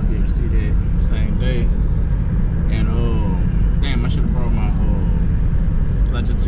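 Steady low road and engine rumble inside the cabin of a moving box-body Chevrolet Caprice, with a voice heard off and on over it.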